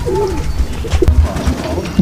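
Domestic Sialkoti pigeons cooing in their loft over a low rumble.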